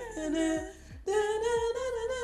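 A woman humming a tune in long held notes, two phrases with a short break about a second in.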